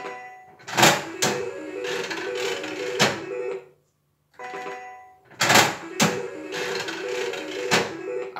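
Electromechanical three-reel slot machine played for two spins in a row. Each spin opens with a sharp click as the spin button is pressed, followed by a whir of spinning reels and a short repeating electronic beeping tune, and ends with a clack as the reels stop.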